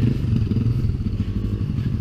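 Dirt bike engine idling steadily.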